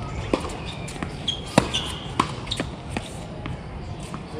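Tennis ball on a hard court: about five sharp pops of the ball off rackets and the court surface, unevenly spaced, the loudest about a second and a half in.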